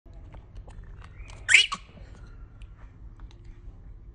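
A baby monkey gives one short, loud, high-pitched squeal about one and a half seconds in, while the two babies suck at a milk bottle with small wet clicking sounds.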